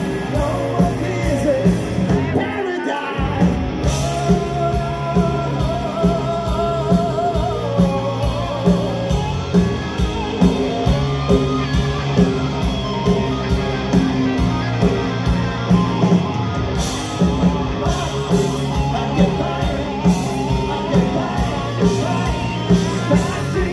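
Live rock band playing: a male singer over electric guitars, bass and a steady drum beat. The bass and kick drop out briefly about three seconds in before the full band comes back.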